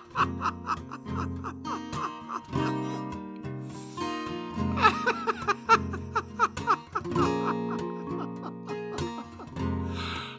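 A carbon-fibre Rainsong acoustic guitar fingerpicked as a song's introduction: a run of quick plucked notes over ringing bass notes.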